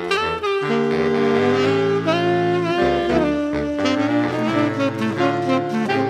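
Saxophone ensemble, baritone saxophones on the low parts, playing sustained chords in close harmony in a jazz style, the voices moving together from chord to chord every second or so.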